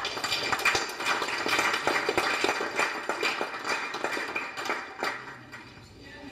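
Audience applauding: dense clapping that starts all at once and fades away over about five seconds.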